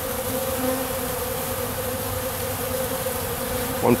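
Many honeybees buzzing around an open pollen feeder: a steady, even hum of wingbeats.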